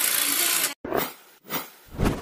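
A break in a dance track filled by a hiss-like electronic noise effect. A steady wash of hiss cuts off suddenly under a second in, followed by two short, softer swells of noise separated by brief silences.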